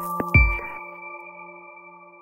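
Electronic intro jingle: a final couple of struck hits with a bass thump, then a chord of held bell-like tones that slowly fades away.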